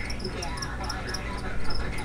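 Crickets chirping in short, repeated high notes over a steady low hum, with a brief louder bump near the end.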